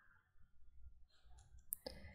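Near silence with a low room hum, broken by a few faint clicks close together near the end.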